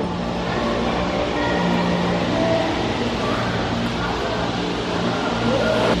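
Steady low hum and rumble of a gondola lift station's machinery as the cabins run through the station.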